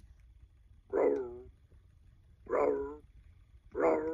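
B. Toys Woofer toy guitar in Howl mode playing recorded dog-howl notes as its fret buttons are pressed: three short howls, each sliding down in pitch, about a second and a half apart.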